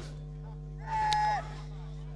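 Steady electrical hum on the commentary feed. About a second in, a single held vocal call lasts about half a second and dips in pitch at its end.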